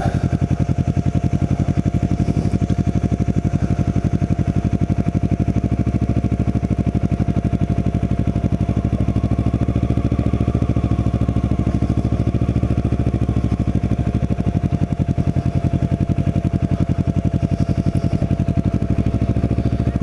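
Kawasaki Ninja 650R's parallel-twin engine running steadily at low road speed, an even rapid pulse, heard from the bike's own mount.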